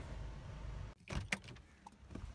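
Inside a car, a low steady hum cuts off suddenly about halfway through, followed by two or three sharp clicks, as the car is switched off and the key is taken from the ignition.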